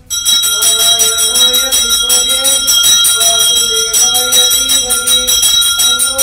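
Temple bell rung rapidly and without pause during puja, its high ringing tones held over a steady clatter of strokes. A wavering melody of music plays beneath it.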